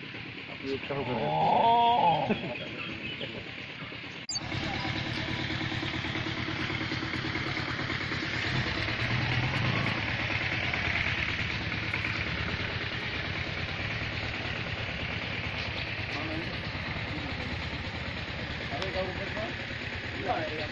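A rooster crows once, about a second in. After an abrupt cut, a steady rushing outdoor noise follows.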